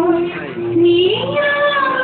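A high singing voice holding a long note, then sliding up to a higher note about halfway through and holding it.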